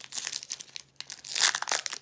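Foil trading-card pack wrapper crinkling as it is handled and opened, with a louder stretch of crackling about one and a half seconds in.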